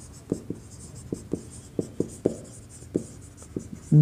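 Marker pen writing on a whiteboard: a string of about a dozen short, irregular taps and strokes as letters and an arrow are drawn.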